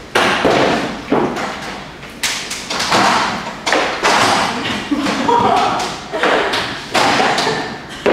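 Repeated thuds and knocks, about one a second, from Pilates reformer jump boards being lifted off and set down on the reformer frames.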